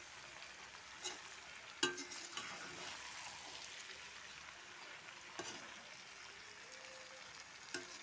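Chopped green olives and chillies sizzling faintly in hot mustard oil in a pan while being stirred together with salt and turmeric. A few sharp knocks against the pan come through the sizzle, the loudest about two seconds in.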